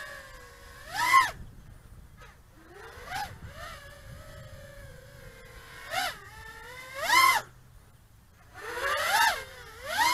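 HGLRC Sector 5 V3 quadcopter's brushless motors and propellers whining on a 4S battery, with about six short throttle punches in which the pitch jumps up and the sound gets louder, falling back to a steadier, quieter hover tone between them.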